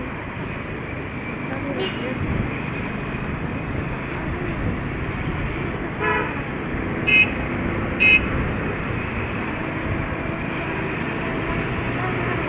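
City street traffic: steady road noise with three short vehicle horn toots about a second apart, past the middle.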